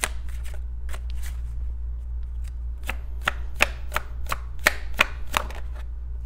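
A deck of oracle cards being shuffled by hand: a run of sharp card slaps and snaps, a few a second, with a short lull about a second in.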